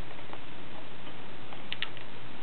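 Soft, irregular clicks and smacks of a pipe smoker's lips on the stem while puffing, with two sharper clicks close together near the end, over a steady hiss and low hum.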